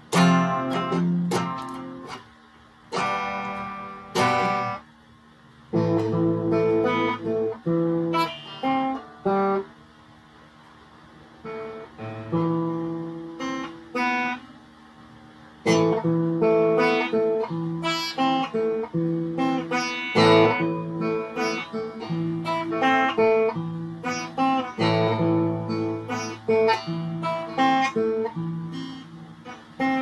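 Stratocaster-style electric guitar played solo: chords strummed and picked in phrases, with a few short pauses, the song finishing near the end.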